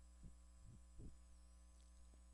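Near silence: a steady low electrical mains hum, with a few faint short sounds.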